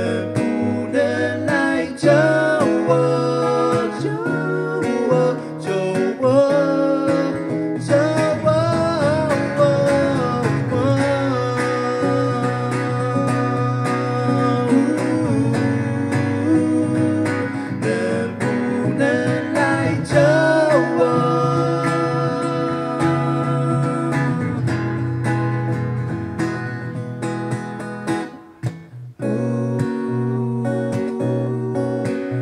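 Two steel-string acoustic guitars strummed together with male voices singing over them, an amplified live acoustic performance. The singing drops out after about twenty seconds while the guitars carry on, with a brief break in the playing near the end.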